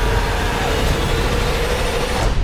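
A loud, dense rumble with a steady humming tone held over it: a cinematic trailer sound effect that stops abruptly just after the end.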